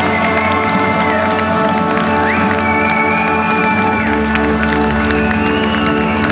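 Live jazz-funk band playing an instrumental: organ chords over bass guitar and drums, with long held lead notes that slide up into pitch and cymbals ticking throughout.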